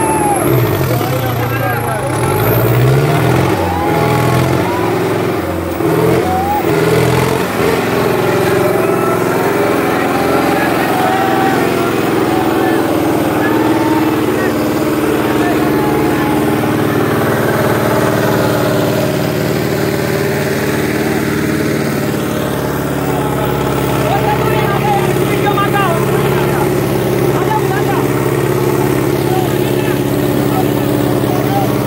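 Sonalika DI 750 tractor's diesel engine running steadily while pulling two harrows in a tractor-pulling contest, with a crowd shouting over it throughout.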